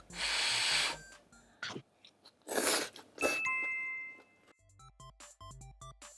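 Noodles being slurped from a bowl in several loud bursts, the longest at the start, over light background music. A chime-like ding sounds about three seconds in and rings for about a second.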